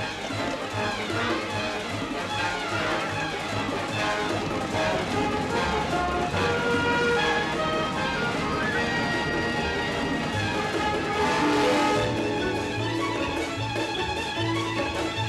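Orchestral music with strings over a steady low beat.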